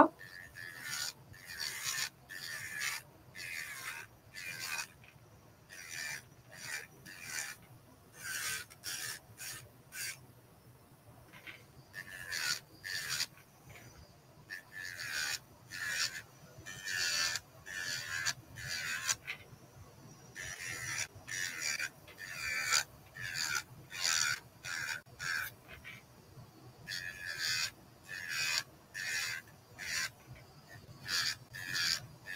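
Electric nail drill (e-file) with a white bit filing and shaping a gel extension nail tip, grinding in short repeated strokes, a few each second, with a couple of brief pauses.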